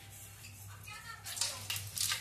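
Whole spices and dried red chillies tipped into hot oil in an aluminium pot, starting to sizzle about a second and a half in, over a low steady hum.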